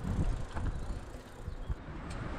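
Bicycle riding over brick paving: tyre and frame noise with an uneven low rumble of wind buffeting the microphone.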